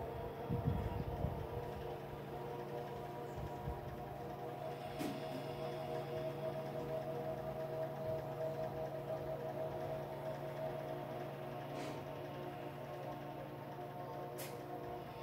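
Slow ambient meditation music of steady, held drone-like tones.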